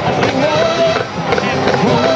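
Marching band playing: brass and saxophones carrying a held melody over snare and bass drum beats.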